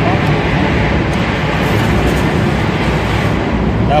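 Steady, loud background rumble and hiss of a metro station, with faint voices.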